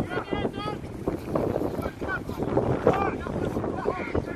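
Scattered distant shouts and calls from players and spectators at a rugby match, over a steady rumble of wind buffeting the microphone.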